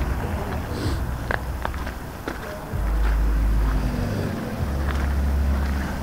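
Wind buffeting the microphone in low rumbling gusts that start and stop abruptly, over outdoor street background, with a few light footsteps in the first half.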